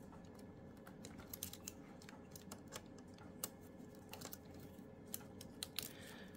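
Faint, scattered light clicks and rustling of insulated telephone wires being handled and fitted to the screw terminals inside a Western Electric 2831 telephone, a few clicks a little louder than the rest.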